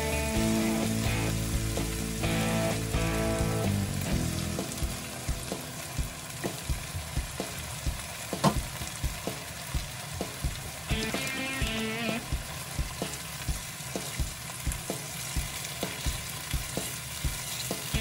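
Diced tomatoes, bacon and onion sizzling in a hot frying pan, with sharp pops about twice a second and one louder pop midway. Background music plays over the first few seconds.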